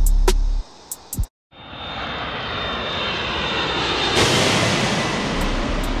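Background hip-hop music cuts off about a second in. A loud rushing roar then swells up, with a faint high whine in it, and peaks about four seconds in.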